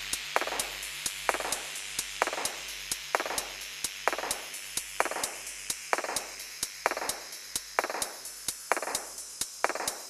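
Background music with a steady beat: quick sharp ticks and a stronger swelling hit a little under once a second.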